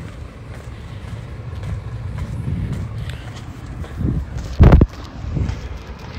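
Steady low outdoor rumble on a handheld phone's microphone, with a single loud, brief thump about four and a half seconds in.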